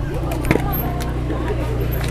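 A vehicle engine running with a steady low drone under quiet background voices, with a single sharp click about half a second in.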